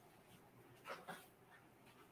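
Near silence: faint room tone, with two brief faint sounds close together about a second in.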